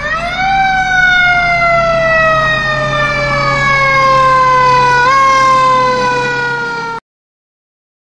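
A Federal Q mechanical siren winds up sharply in the first half-second, then coasts slowly down in pitch, with a brief bump back up about five seconds in. The sound cuts off suddenly about a second before the end.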